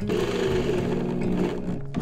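Cordless drill driving a screw into a wooden board, its motor running steadily for nearly two seconds and stopping just before the end.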